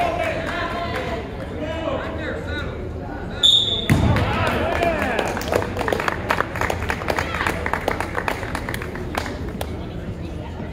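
Spectators talking and calling out in a gym, with a short high whistle blast about three and a half seconds in. Right after it comes a thud, then a run of scattered knocks and thumps.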